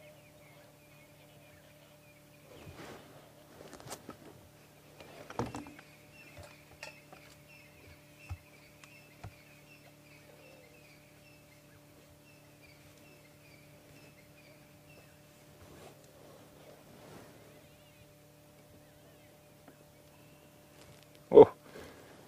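Quiet outdoor ambience: a faint steady low hum, with a faint, rapidly repeated high chirping over the first half. A few soft knocks and rustles come in the first several seconds, and there is one sharp bump just before the end.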